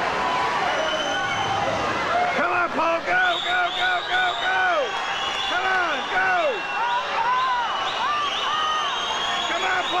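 Spectators yelling short repeated calls of encouragement to swimmers mid-race, many voices overlapping several times a second, over a steady wash of crowd and pool noise.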